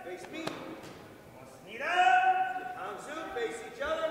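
Martial-arts yells (kihaps) from sparring Tang Soo Do competitors echoing in a gym: one loud, long, high-pitched shout about halfway through and shorter ones near the end. A single sharp smack comes about half a second in.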